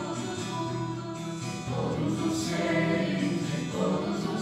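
Group of voices singing a Hindu devotional bhajan together in long held notes, accompanied by a strummed guitar.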